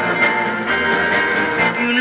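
Rockabilly garage band recording playing from a vinyl single: guitar-led band music in a gap between sung lines, with the voice coming back in at the very end.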